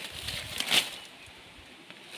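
Leafy vines rustling, with one sharp crackle about three quarters of a second in, as jack bean vines are trimmed off a banana plant; quieter in the second half.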